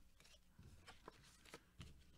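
Near silence with about half a dozen faint clicks and rustles of Pokémon trading cards and booster packs being handled.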